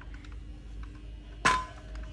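A Hitachi circular saw set down on a tile floor: a single sharp metallic clank with a brief ring, about one and a half seconds in.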